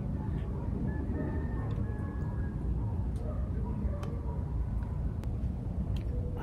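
Outdoor ambience: a steady low rumble with a few faint, sharp clicks and a faint thin whistle about a second in.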